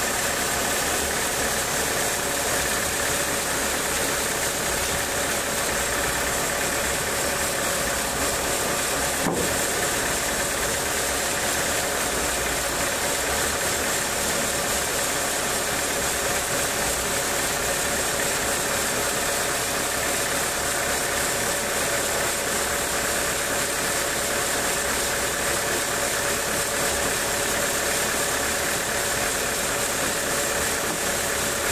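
A homemade portable sawmill's engine running steadily, holding an even, unchanging note with no cut being made.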